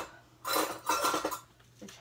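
Metal kitchen utensils clattering as hands rummage through them, a rapid run of clinks lasting about a second, in a search for a quarter measure.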